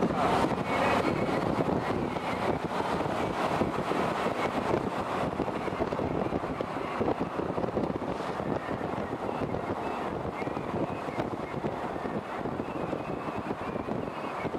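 Road and wind noise of a vehicle moving along a highway, heard from inside at a side window: a steady rushing noise, a little louder at the start.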